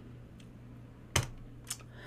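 Keystrokes on a computer keyboard: one sharp click about a second in and a fainter one shortly after, over a low steady hum.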